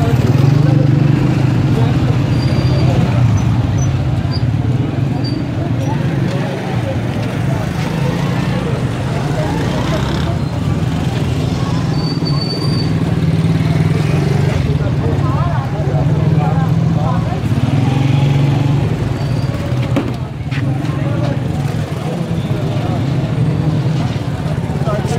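Busy street-market ambience: many people talking at once, with motorcycle engines running as bikes pass through the crowd.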